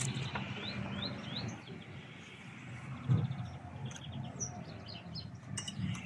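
Small birds chirping: a few short rising chirps, over a low steady background rumble, with a soft thump about three seconds in.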